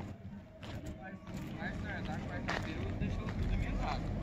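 Faint, indistinct voices in the background over a low rumble that grows louder in the second half.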